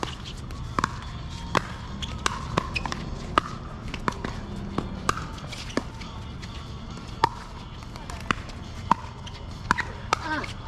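Pickleball paddles striking the plastic ball in rallies: sharp pocks at irregular intervals, roughly one a second, some from neighbouring courts, over a steady low rumble.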